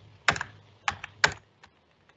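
Computer mouse clicking: three sharp clicks in the first second and a half, then a few much fainter ticks near the end.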